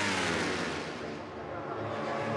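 Superbike racing motorcycle engines passing, the engine note sliding down in pitch and fading over the first second, then building slightly again near the end.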